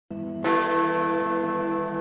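Big Ben, the Great Bell in the Elizabeth Tower, strikes the hour once about half a second in. Its deep bong keeps ringing afterwards with many lingering tones.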